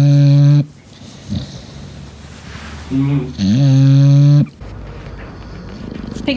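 English bulldog snoring while asleep being stroked: two loud, steady-pitched snores, a short one at the start and a longer one about three seconds in.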